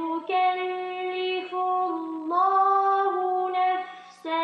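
A woman reciting the Quran in melodic tartil, holding long notes and stepping between pitches, with brief pauses between phrases. The voice carries an echo, which the judge suspects comes from an added sound effect rather than from an empty room.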